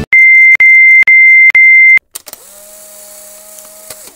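Four loud electronic beeps on one high pitch, about two a second. They are followed by a quieter whooshing transition effect with a tone that glides up and then holds, fading out near the end.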